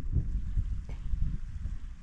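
Wind rumbling on the microphone, an uneven low buffeting in a break between speech.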